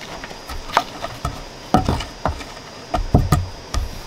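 A wooden log being handled and set down on sandy ground: a run of dull knocks and thuds, irregular, about two a second, heavier in the second half.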